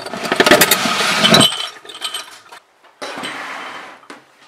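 Workshop tools and containers being handled: a dense rattling and clinking of small hard objects for about a second and a half, then a short scraping slide near the end.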